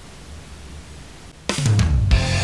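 Faint low hum, then rock background music with drums cuts in suddenly about three-quarters of the way through.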